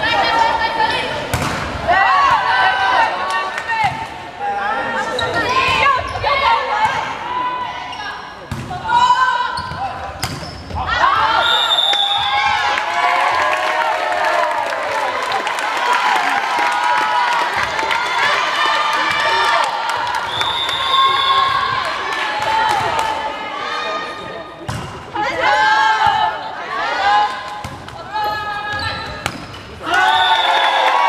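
Girls' voices shouting and calling during volleyball play in an echoing sports hall, with the sharp knocks of the ball being struck.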